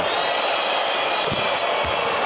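Steady arena crowd noise during a free throw, with a basketball bouncing twice on the hardwood court late on.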